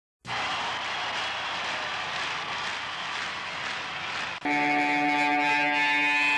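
A steady wash of noise, then about four seconds in a loud electric guitar chord is struck and held ringing.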